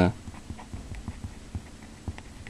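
Felt-tip marker writing on paper: a quick run of faint, irregular scratches and taps as short strokes are drawn.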